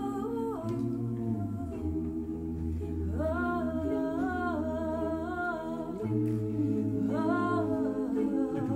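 A cappella choir humming sustained low chords while a female soloist sings long, sliding phrases over them, one starting about three seconds in and another near the end.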